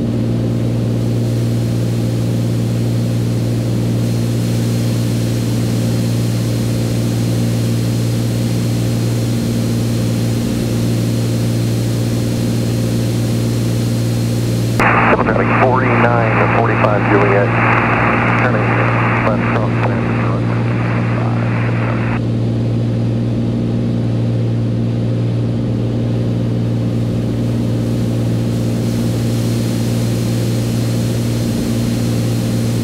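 Steady drone of a Beechcraft A36 Bonanza's piston engine and propeller, heard inside the cabin in cruise. About halfway through, a burst of radio voice plays over it for some seven seconds, then stops.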